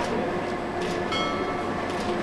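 Steady machine hum with a few faint, thin whining tones running through it.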